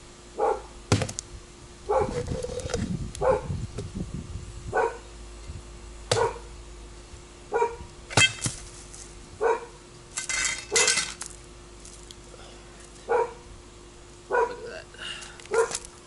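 A dog barking repeatedly, about one bark every second or two. A few sharp knocks of a machete blade striking into a golden coconut come in between the barks.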